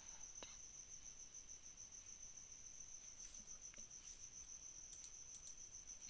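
Near silence: faint room tone with a steady, evenly pulsing high-pitched trill and a few faint clicks.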